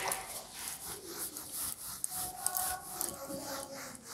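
Handheld whiteboard eraser rubbing across a whiteboard in repeated wiping strokes as the writing is erased.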